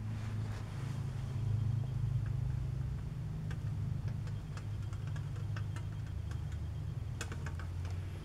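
A steady low hum, like a motor running, with a few faint clicks and taps over it in the second half.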